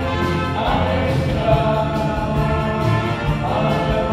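Live band playing a song with a steady beat and sung voices.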